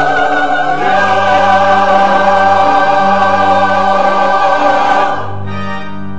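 Church choir singing a sustained anthem over organ accompaniment. The voices stop about five seconds in, and the organ carries on alone with steady held chords.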